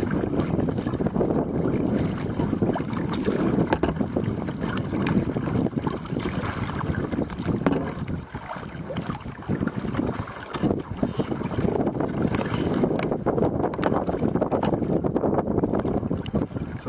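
Steady wind noise on the microphone, with water slapping and splashing against a kayak.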